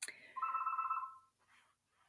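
A single sharp click, then a short trilling tone steady in pitch that lasts about a second and stops.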